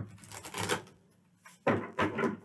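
A deck of tarot cards being shuffled by hand: about a second of papery riffling and card clicks. A louder burst follows near the end.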